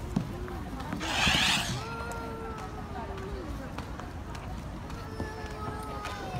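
A short rushing swish about a second in, as a toddler slides down a yellow plastic playground slide. It is followed by a child's long, drawn-out voice calls.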